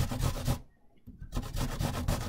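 Unpeeled apple being grated on a metal box grater in quick repeated strokes. The grating stops for a moment a little over half a second in, then resumes.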